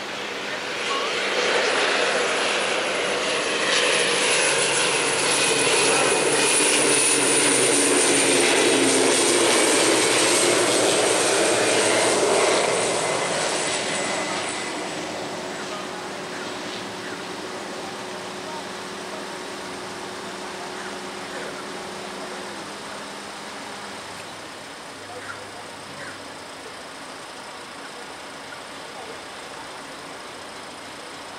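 Basler BT-67, a Douglas DC-3 converted to two Pratt & Whitney PT6A turboprops, passing close on landing: propeller drone with a high turbine whistle. It grows loud over the first few seconds, the pitch slides slowly down as the aircraft goes by, and about fifteen seconds in it dies down to a quieter steady sound as the aircraft rolls out on the runway.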